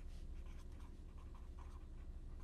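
Felt-tip marker writing on a paper pad: a quick run of faint, short strokes as letters are written, over a steady low hum.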